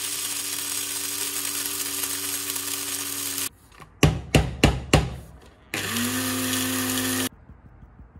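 Electric blade coffee grinder running on whole coffee beans in two bursts. The first lasts about three and a half seconds and rises slightly in pitch as it spins up; four sharp knocks follow. The second burst is shorter, about a second and a half, and cuts off suddenly.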